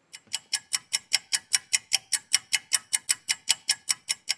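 Clock-ticking sound effect: a fast, even run of sharp ticks, about five a second. It marks a three-minute wait while contact cleaner loosens the battery adhesive.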